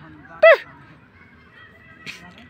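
A grey francolin gives one short, loud call note about half a second in, its pitch arching up and then dropping away.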